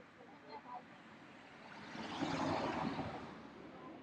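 A vehicle passing by: a rush of tyre and engine noise that swells, peaks about two and a half seconds in, then fades away.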